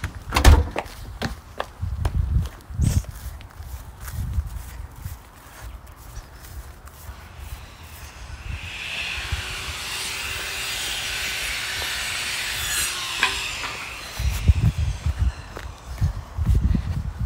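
Footsteps and phone-handling thumps while walking outdoors. About eight seconds in, a steady hissing noise swells up, holds for about five seconds, then cuts off suddenly with a click, and the footsteps go on.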